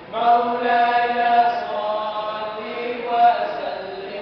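A nasheed sung by a single voice, long notes held and slowly bending in pitch, without any percussion.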